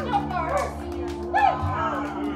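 Electric keyboard holding a sustained chord, with voices talking and exclaiming over it.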